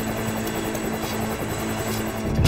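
Piston engines of a WWII-era propeller transport plane running steadily on the ground, an even drone with a constant low hum.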